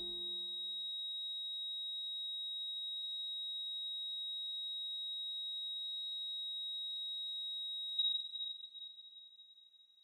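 A patient monitor's continuous flatline tone, a single steady high electronic tone held for about eight seconds, then swelling briefly and fading out; it is the signal that the heart has stopped. The last notes of the song die away in the first second.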